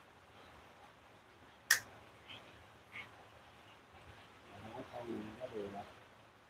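A single sharp snip of small scissors cutting through the roots of a Mai (yellow apricot) sapling, followed by two faint ticks of the blades. A soft voice-like sound follows near the end.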